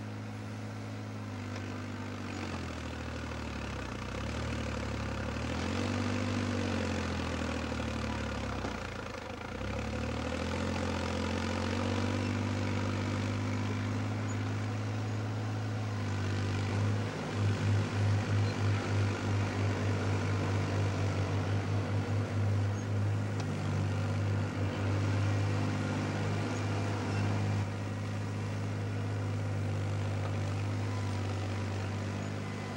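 Engine of a small crawler loader running under load as it digs and pushes earth. Its note dips about a third of the way in and comes back up, and from a little past halfway the sound pulses in a rapid throbbing beat.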